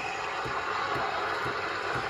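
Espresso machine steam wand steaming milk in a stainless steel jug: a steady hiss.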